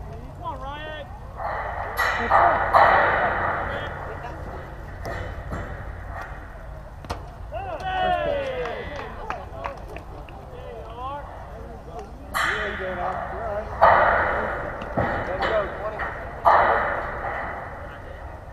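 Voices of spectators and players calling out across a baseball field, with several sudden loud shouts that fade over a second or two.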